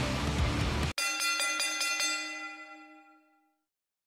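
Background music cut off abruptly about a second in by a chime sound effect: a quick run of about six bell-like strikes whose tones ring on and fade away, signalling that a one-minute countdown timer has run out.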